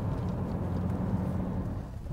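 A second-generation Dacia Duster with the TCe 125 petrol engine running at a low, steady note as it drives slowly over a rough gravel track, with tyres crunching on loose stones.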